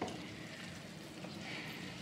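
A cast-iron skillet of mushrooms and rice sizzling steadily as it cooks over a wood-fired rocket stove.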